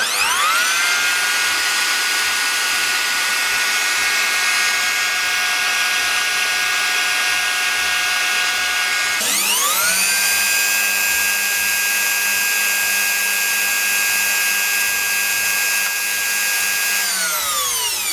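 Bosch POF 1400 ACE 1400 W wood router running with no load at its lowest speed setting. Its motor whine rises as it spins up at the start, breaks off and spins up again about nine seconds in, runs steadily, then winds down near the end.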